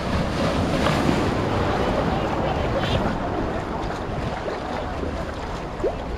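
Rough ocean surf breaking and washing through the shallows, heard as a steady rushing noise, with wind buffeting the microphone.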